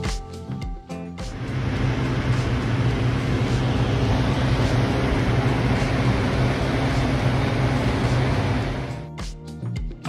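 Propane burner of a hot air balloon firing a steady blast for about eight seconds, beginning about a second in, heating the envelope as it is inflated with the basket lying on its side. Music plays over it at the start and end.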